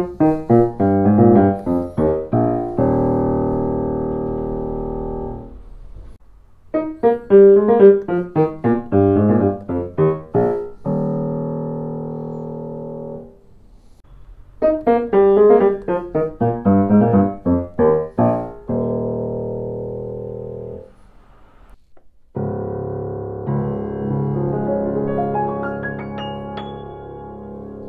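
Bechstein grand pianos played gently, in comparison: the same short phrase of quick notes three times over, each ending on a held chord that slowly dies away. Near the end comes a slower passage of sustained chords.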